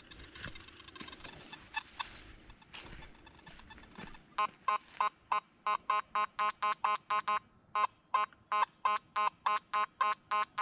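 Nokta Makro Simplex metal detector giving short, identical beeps about three times a second as its coil passes over a nickel placed with a piece of iron, with a brief pause partway through. Before the beeping starts, about four seconds in, there are faint handling clicks and rustles.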